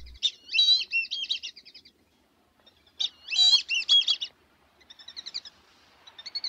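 A songbird singing in warbling phrases of rapid, looping high notes: two loud phrases about three seconds apart, then a shorter, fainter one near the end.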